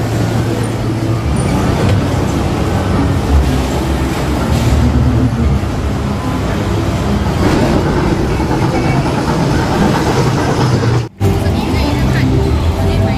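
Steady low mechanical rumble of a carnival ride running, with voices in the background; the sound drops out for a moment near the end.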